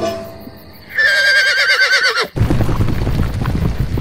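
A horse whinnies with one wavering cry about a second in, then hoofbeats follow.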